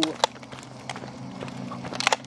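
Quick, irregular tapping of footsteps and dogs' claws on an asphalt path as two leashed dogs trot ahead, over a low steady hum.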